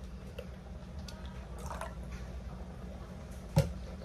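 Faint handling sounds as ingredients are added to a cup of hot water, with one sharp knock about three and a half seconds in, over a steady low hum.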